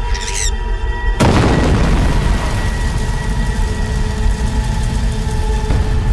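Dramatic film score with held tones. A short rising sweep leads into a loud boom about a second in, and its deep rumble carries on under the music.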